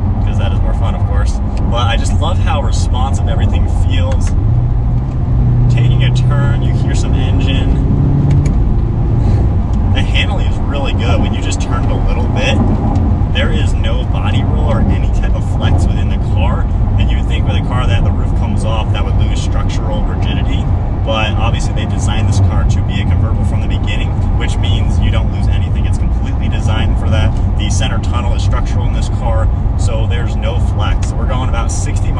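Low, steady engine and tyre rumble inside the cabin of a 2020 Chevrolet Corvette Stingray C8 cruising in its comfort mode on a bumpy road, with a man talking over it. About five seconds in, the V8's note swells for a few seconds.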